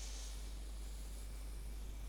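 Pen tip scratching softly across paper as it draws a curved line, a short stroke in the first half-second, over a steady faint hiss and low electrical hum.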